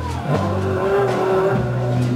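A small swing-blues band playing live: upright bass notes and drums, with one long held melody note over them in the middle.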